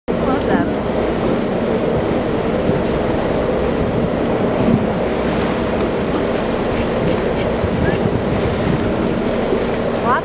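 Boat engine idling steadily, under wind noise on the microphone and the wash of choppy sea water.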